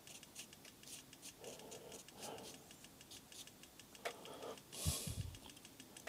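Watercolour brush dabbing and scratching on paper, a run of light quick ticks, with a dull knock a little before five seconds in.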